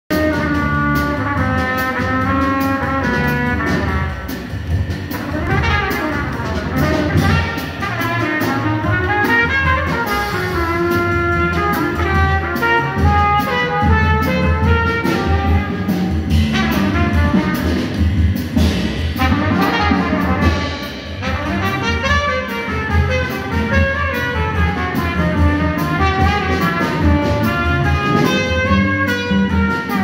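Live jazz trio playing: trumpet carrying the melody over upright double bass and drum kit.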